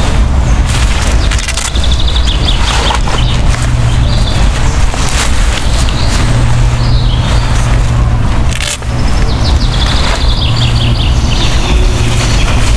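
Small birds chirping in short phrases three times over a loud, steady low rumble, with scattered sharp clicks.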